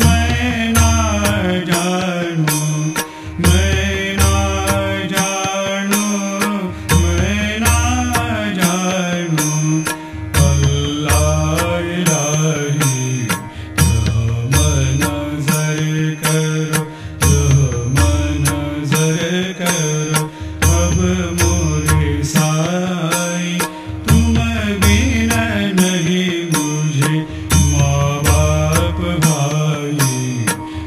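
Indian devotional song sung in chant-like style, with a voice singing over a steady, low drum beat and frequent sharp percussion strikes.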